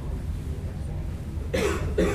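A person coughs near the end, a short double burst, over a steady low room hum.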